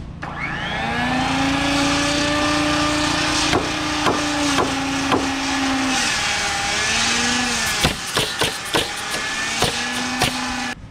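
Circular saw spinning up and cutting through framing lumber for several seconds, its motor pitch sagging slightly under load, then short further cuts. Sharp nailing shots sound over it, spaced about half a second apart at first, then a quicker cluster near the end.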